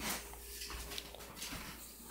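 A Jack Russell terrier moving about on a hard tiled floor close to the phone, with light taps and a short knock right at the start.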